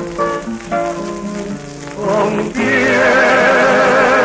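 1950 bolero recording: an instrumental break of plucked guitar notes with a requinto lead between sung lines. About two and a half seconds in, a man's voice with a wide vibrato comes back in over the guitars.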